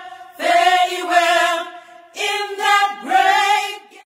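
Sung vocals in a choir-like song, four short phrases of held notes with brief breaks between them.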